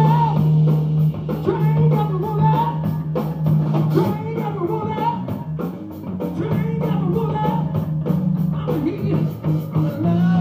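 Rock band playing live: distorted electric guitar, bass holding a low note, drum kit with a steady cymbal beat, and a singer's voice.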